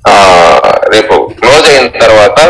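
Speech: a person's voice talking loudly in short phrases.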